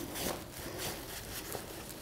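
Faint rustling of a long silk cloth being rolled up by hand, over low room noise.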